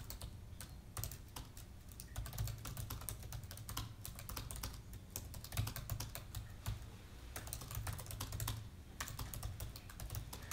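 Typing on an Apple laptop keyboard: a continuous, irregular patter of keystrokes with a brief pause about nine seconds in.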